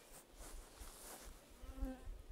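Faint rustling and low thumps of footsteps through grass, and near the end a short buzz of a flying insect passing close to the microphone.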